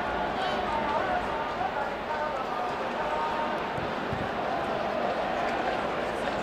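Soccer stadium crowd: a steady din of many voices, with drawn-out calls rising above it.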